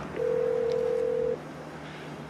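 Ringback tone of a dialled mobile-phone call heard over the phone's loudspeaker: one steady beep lasting about a second while the call rings through.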